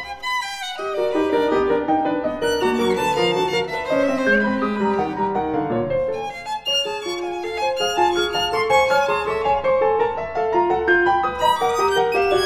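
Violin and grand piano playing a contemporary chamber piece together: quick successions of short notes throughout, with brief dips in loudness about half a second in and again at about six and a half seconds.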